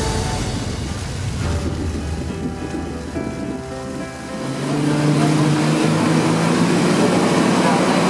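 Background music fades out over the first few seconds. About halfway through, the steady low drone of a speedboat's engine comes in, with the rush of water from the hull and wake.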